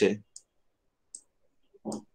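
Two short, faint clicks, just under a second apart, between stretches of a man's speech.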